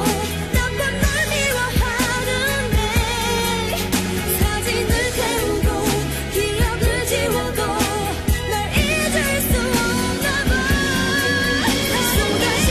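A K-pop song playing: a sung vocal melody over a steady beat with bass and backing instruments.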